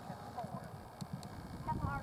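Hoofbeats of a horse galloping over grass: a run of soft, irregular thuds.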